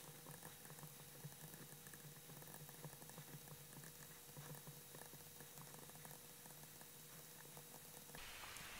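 Near silence: a faint steady hum with soft, irregular little ticks of a stylus writing on a tablet screen.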